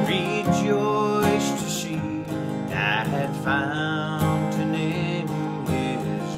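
A man singing while he strums an acoustic guitar.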